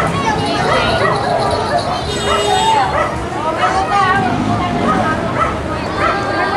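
A crowd of children chattering and calling out at once, many high voices overlapping.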